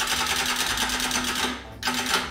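Wind-up chattering-teeth toy clattering: a rapid, even run of plastic clicks from its clockwork mechanism, which stops about one and a half seconds in.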